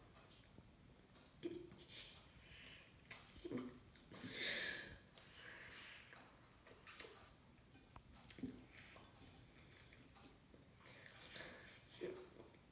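Faint chewing of soft pandesal bread roll, with scattered short soft sounds of the bread being torn and handled.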